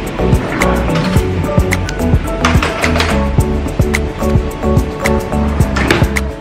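Background music with a steady beat and sustained chords, with a swell of noise about halfway through and again near the end.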